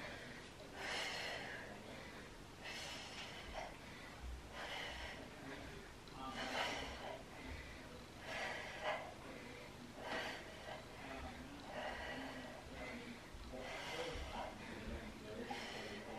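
A woman's short, forceful breaths out, one with each kettlebell swing, about one every two seconds: hard breathing under the effort of continuous swings.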